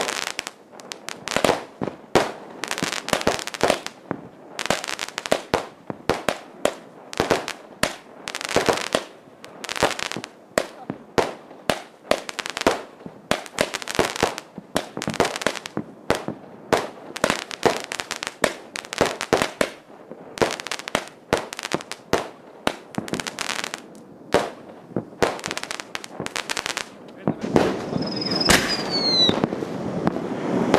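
Aerial fireworks going off in a dense, continuous barrage of sharp bangs and crackling bursts from rockets and shells. A falling whistle sounds near the end.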